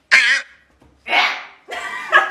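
Two short animal-call sound effects from a soundboard: a loud one with a wavering pitch at the start, and a noisier one about a second in.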